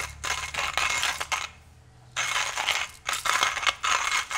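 Stainless-steel hand coffee grinder rattling and scraping in three loud bursts as it is handled just after grinding.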